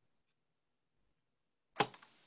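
Near silence, then a single short knock near the end.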